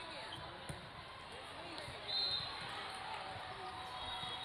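A volleyball bouncing on a hard court with voices around the hall, then a short, shrill referee's whistle about two seconds in, the signal for the serve.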